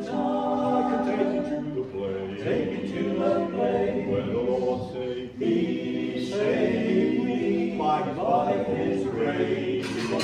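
Unaccompanied male voice group of five singing in harmony, holding long notes, with a brief break about halfway through before the next phrase.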